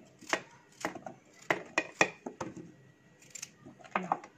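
Kitchen knife slicing a raw carrot held in the hand, the pieces dropping into an aluminium baking tray: a run of about nine sharp, irregular clicks.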